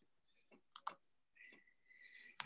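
Near silence, broken by two short sharp clicks a little under a second in, then a faint steady high tone near the end.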